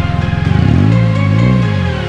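2006 Scion xB's 1.5-litre four-cylinder engine starting through its large exhaust tip and revving twice, rising and falling in pitch each time, over background music.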